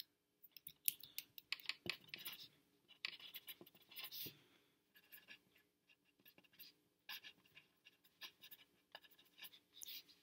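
Pencil writing on lined notebook paper: short, irregular scratchy strokes with brief pauses between words and symbols, faint overall.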